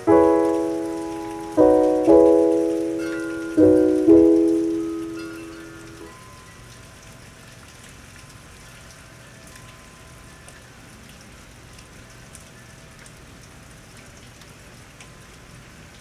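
Five piano chords, each struck and left to fade, the last dying away about six seconds in. Then only a steady hiss of rain with scattered drop ticks remains.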